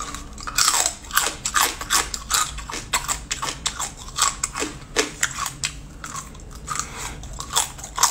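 Whole small crabs being bitten off a skewer and chewed shells and all, close to the microphone: a quick, irregular run of sharp crunches.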